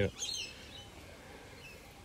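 A bird chirps briefly just after the start with a short, high call, then only faint outdoor background remains.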